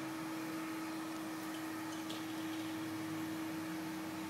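A steady background hum holding one unchanging mid-pitched tone over an even hiss.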